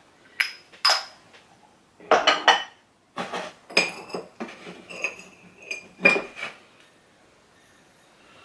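Glass items clinking and knocking together as hands rummage through a cardboard box of glassware and ceramics. There are two sharp clinks in the first second, a cluster around two seconds in, then a run of clinks, some ringing briefly, until about six and a half seconds.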